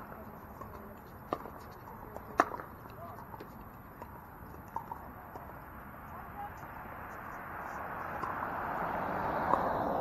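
Pickleball paddles hitting a plastic ball: a few sharp, separate pops, the loudest about two and a half seconds in, with faint voices under them. A broad wash of noise swells over the last few seconds.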